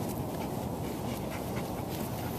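An Old English Sheepdog panting, over a steady low rumble of wind on the microphone.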